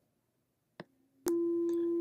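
Near silence with one faint click, then a steady 340 Hz sine-wave tone from a function generator starts suddenly about a second and a quarter in and holds.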